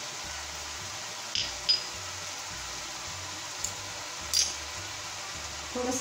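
A few light clicks and clinks of kitchen utensils, one with a brief high ring, over a steady background hiss.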